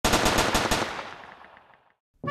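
A sudden rapid burst of about eight sharp bangs in under a second, like automatic gunfire, followed by an echoing tail that fades out over the next second.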